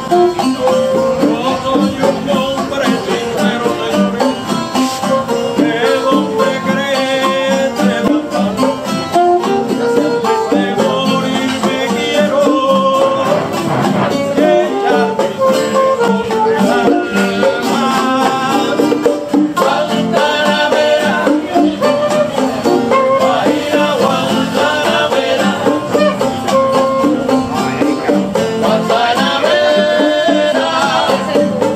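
Small live band playing acoustic music: strummed and plucked guitars with a saxophone and small hand drums, steady and loud.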